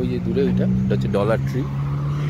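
A road vehicle's engine running on the street, a steady low hum that shifts slightly in pitch, with voices over it.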